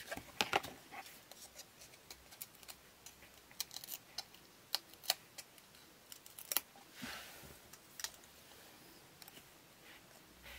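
Scattered sharp clicks and light rustles of paper handling as foam adhesive dots are peeled from their backing sheet and pressed onto a small piece of cardstock. A soft rustle comes about seven seconds in.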